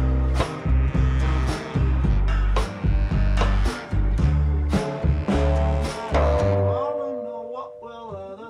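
Background music with a steady beat and heavy bass, thinning out to a quieter passage near the end.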